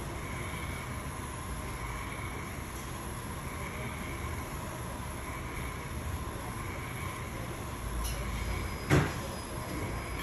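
Handheld gas torch flame hissing steadily as it heats a fine silver dome to fuse granulation onto it. A single short knock about nine seconds in.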